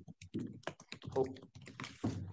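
Typing on laptop keyboards: a quick, irregular scatter of light key clicks.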